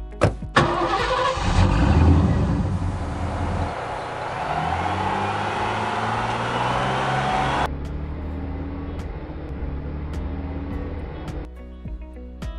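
A truck engine starting and running, loudest about two seconds in and cutting off about eight seconds in, over background music.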